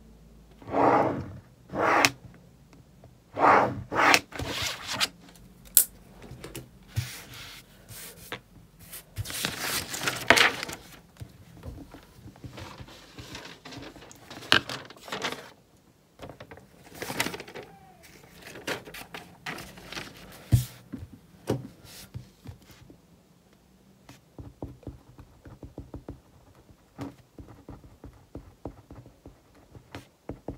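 Sheets of lined notepaper rustling and being shuffled on a desk, with knocks and scrapes of things being moved. In the last third it turns quieter: short small ticks and scratches of a pen writing.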